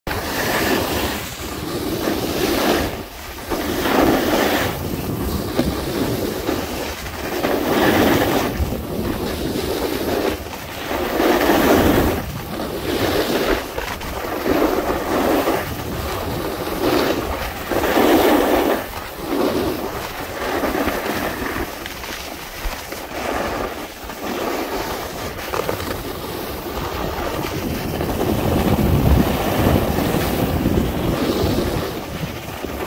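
Wind rushing over the microphone with the scrape of edges sliding on semi-firm machine-groomed snow, rising and falling in swells a second or two apart.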